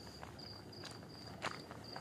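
A cricket chirping in a steady, evenly pulsed high trill, with two footsteps about a second in, half a second apart.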